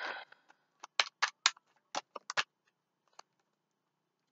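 Tarot cards shuffled by hand: a quick run of crisp card slaps and taps about a second in, then one more tap near the end.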